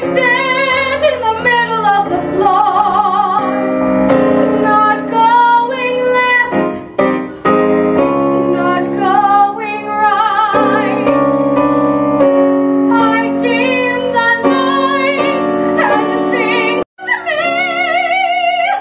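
Soprano singing a musical-theatre ballad with vibrato on held notes, accompanied by live piano chords. The sound cuts out for a split second near the end.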